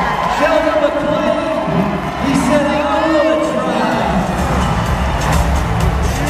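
An announcer's voice over the arena loudspeakers above crowd noise, then music with a steady beat starting about four seconds in.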